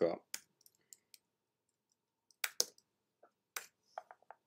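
Computer mouse and keyboard clicks: a scatter of sharp, separate clicks, the loudest a quick pair about two and a half seconds in.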